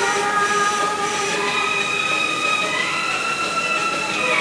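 Background music: an instrumental passage of long held notes, several at once, that shift in pitch a couple of times, with no singing.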